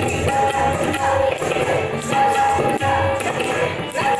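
Kathak dance music: ghungroo ankle bells jingling with the dancer's footwork, over a short melodic phrase that keeps repeating.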